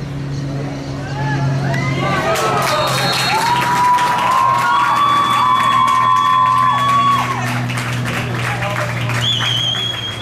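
Flag football players and spectators cheering and shouting with clapping, rising about a second in, with long drawn-out yells in the middle. A high whistle blast near the end, and a steady low hum underneath.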